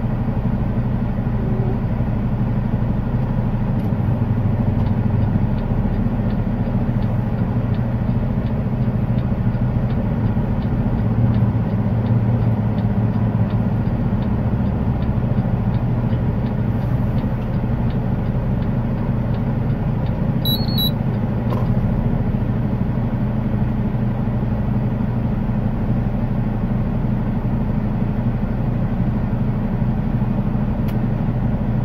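Semi truck's diesel engine running steadily as the truck drives slowly, heard inside the cab. A faint, even ticking runs through the middle, and a short high beep comes about twenty seconds in.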